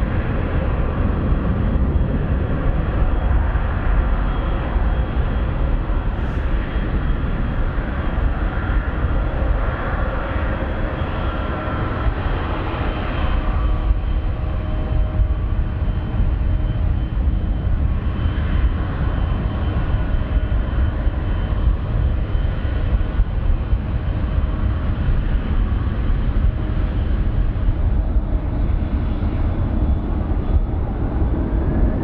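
Boeing 777-300ER's GE90 turbofan engines running at taxi power as the jet taxis: a steady rumble with a faint thin whine above it.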